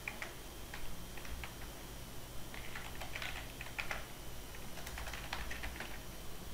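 Computer keyboard typing in short, irregular runs of keystrokes with brief pauses between them, busiest about halfway through and again near the end.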